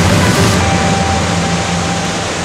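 Gullfoss waterfall: a loud, steady rush of falling water, with the last tones of background music fading out in the first part.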